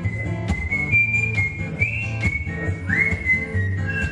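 Acoustic guitar strummed in a steady rhythm under a whistled melody; the whistle holds high notes and scoops up into two of them, about two and three seconds in.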